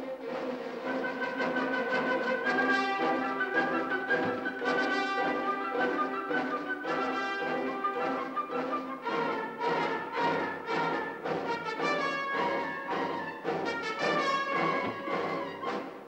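Orchestral background music led by brass instruments, a moving passage of held notes with regular accents throughout.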